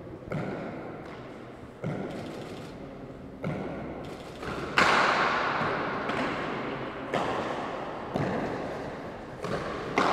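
Hardball handball rally: the hard ball smacks against the walls and floor of an enclosed court, a sharp impact every one to two seconds, each with a long echo off the walls. The loudest strike comes about five seconds in.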